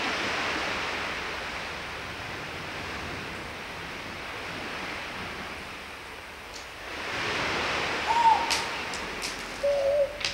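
Sea surf rushing in steady, even noise that swells about a second in and again near the end. Over the second swell come a few short high chirps and sharp clicks.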